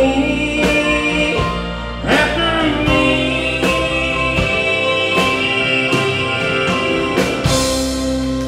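Live country band playing the instrumental close of a song: electric and acoustic guitars over a steady beat, with a bright crash swelling up near the end.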